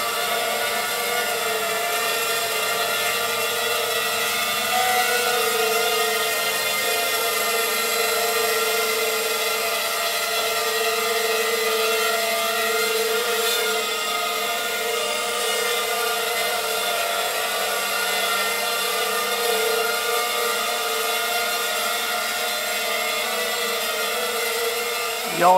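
Racing quadcopter's four Emax MT2204 2300 kV brushless motors spinning Gemfan 5x3 three-blade props, hovering and flying with a steady buzzing whine whose pitch wavers only slightly.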